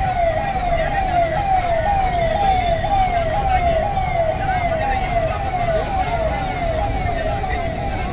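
Electronic siren sounding steadily, its pitch falling and jumping back up about twice a second, over a low rumble of street and crowd noise.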